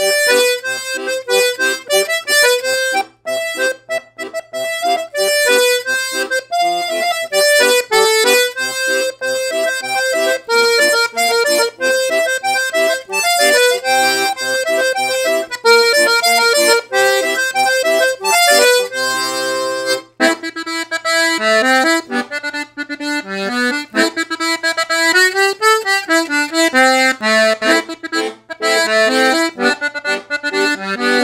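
Castagnari Rik diatonic button accordion in G/C/F with two reed sets in swing tuning, played: a melody on the treble buttons over bass and chord buttons. About two-thirds of the way through a chord is held, then a new tune begins.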